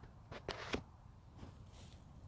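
A few faint crackles and rustles of dry leaf litter, bunched about half a second in.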